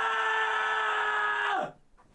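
A man yelling a long, loud 'ah' on one steady high note as a vocal warm-up, ending in a quick downward slide about one and a half seconds in.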